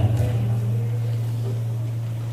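A man's voice through a microphone and PA holding one low, steady note, a drawn-out hum with no words.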